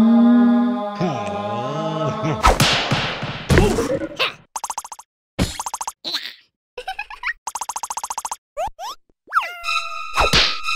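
Cartoon soundtrack: a larva character's voice rises into a long held wail that wavers for a second or two. It is followed by a run of quick, choppy cartoon sound effects and vocal noises, broken by short silences, with a few fast pitch slides near the end.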